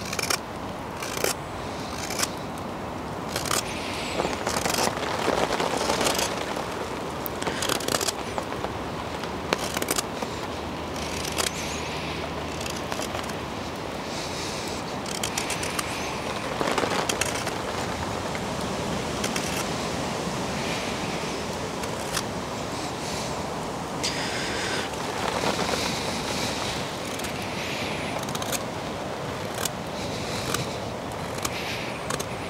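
Hook knife scooping shavings out of the bowl of a green-wood spoon: a run of short scraping cuts, coming quickly in the first several seconds and more spaced out later, over a steady background hiss.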